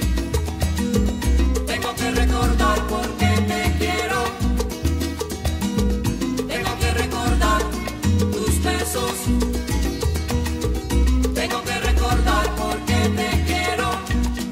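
Instrumental passage of a Cuban salsa recording: a steady bass line and dense percussion under melodic phrases that return about every four to five seconds, with no singing.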